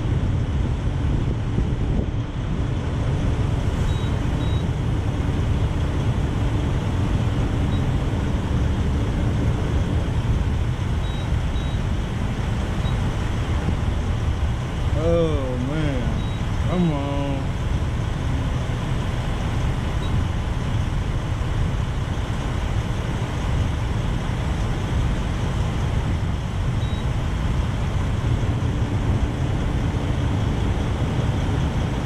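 Steady low rumble of idling diesel truck engines at a fuel island, with two short pitched sounds with a wavering pitch about halfway through.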